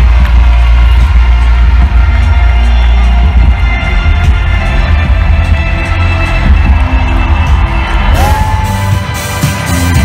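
A rock band playing live in an arena, recorded loud and bass-heavy from the crowd. About eight seconds in the music changes to a brighter passage with a held high note.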